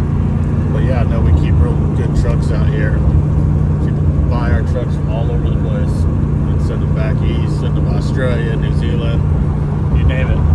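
Steady engine and road drone of a 1973 truck cruising at highway speed, heard from inside the cab, with a constant low hum.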